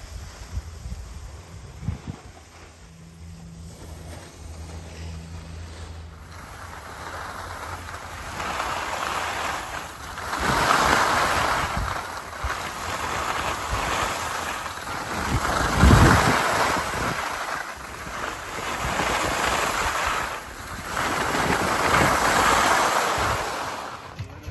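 Wind blowing across a handheld phone's microphone and skis hissing over packed snow on a downhill run. The rush swells and fades over and over, with one heavy low thump of wind on the microphone about two thirds of the way through. The first few seconds hold only a low steady hum.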